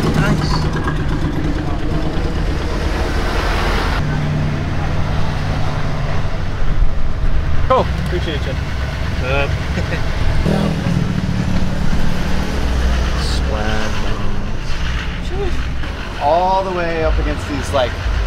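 Low, steady engine rumble of a pickup truck rolling slowly, heard from inside the cab, with short bits of voices now and then.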